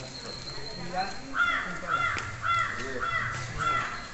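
A crow cawing in a quick run of about seven caws, roughly two a second, beginning about a second and a half in, over faint voices of a crowd.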